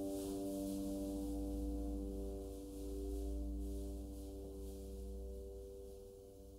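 Solo piano chord left ringing on the sustain pedal, its notes slowly dying away, with a low steady rumble underneath.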